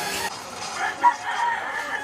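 Chickens calling, with a rooster crowing: several short pitched calls in the second half.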